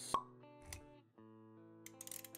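Intro music with sustained tones and a sharp pop sound effect just after the start, then a softer low thud about half a second later.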